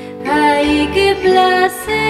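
A woman singing a Canarian folk song solo over plucked guitar accompaniment; her voice comes in about a quarter of a second in, above the held chords of the band.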